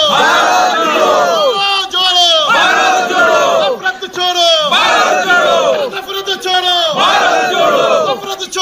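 A group of men chanting slogans in unison, fists raised: a run of loud shouted phrases, each about a second long, with short breaks between them.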